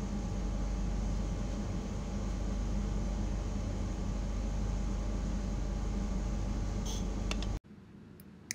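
Steady room hum and hiss, with a couple of faint clicks just before it cuts off abruptly near the end.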